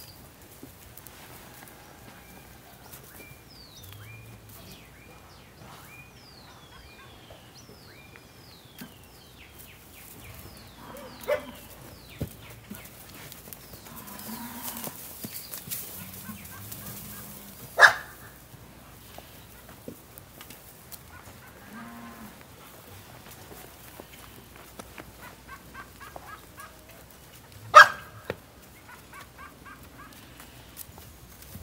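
Cattle lowing now and then in a livestock yard, short low calls, with a run of short falling chirps in the first few seconds. Two sharp knocks, the loudest sounds, come past the middle and near the end.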